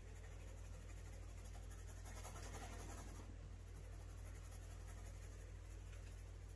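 A soft 9B graphite pencil shading on sketchbook paper: a faint, steady scratching of the lead across the page as dark values are laid in.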